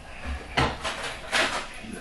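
Kitchen utensils clattering: two short, sharp knocks about half a second and a second and a half in.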